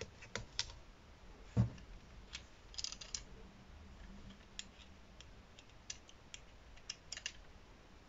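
Faint, scattered light clicks and taps of hands handling die-cut cardstock and the plastic plate of a die-cutting machine, with one louder knock about a second and a half in.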